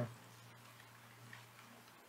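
Faint clicks of a computer keyboard and mouse over a low steady hum.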